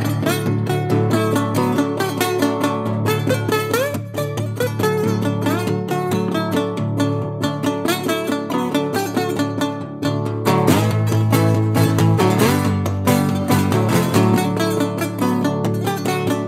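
Live acoustic blues guitar playing an instrumental intro: a busy, steadily picked pattern with a few sliding notes.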